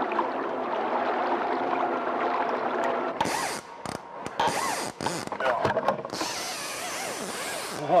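Steady drone of boat and water noise for about three seconds, then stop-start buzzing bursts of a fishing reel's ratchet drag as line is pulled from a salmon trolling reel.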